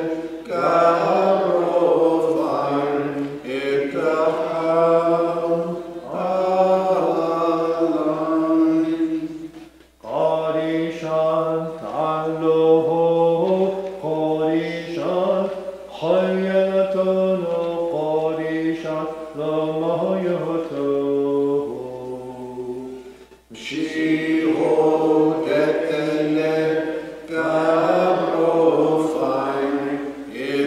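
Unaccompanied liturgical chant of a Maronite service, sung on long held notes. About ten seconds in it thins to a single clear voice that steps down in pitch and pauses briefly; fuller singing resumes a few seconds later.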